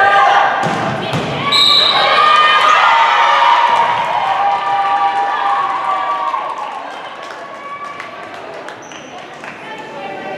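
Volleyball rally in a gym: the ball is struck, then high-pitched shouts and cheers from players and spectators follow as the point ends. They die down over the last few seconds.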